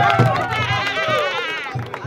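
A group singing and clapping in time over a steady low beat; a high voice wavers rapidly over the singing in the middle, and the song fades away near the end.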